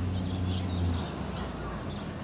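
Faint birds chirping over a steady low hum, which fades out about a second in.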